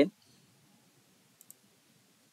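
Two quick computer mouse clicks about a second and a half in, advancing a presentation slide, over faint room tone.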